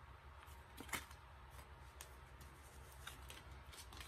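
Faint handling of tarot cards: a few soft, short clicks of card stock being picked up and laid down, one a little louder about a second in, over a low steady hum.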